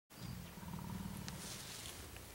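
Mountain gorilla giving a low rumbling grumble that lasts about a second and a half, with a brief click partway through.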